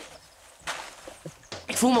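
A short rustle and a few faint soft knocks of a person shifting his weight on a foam mattress, then a man's voice begins near the end.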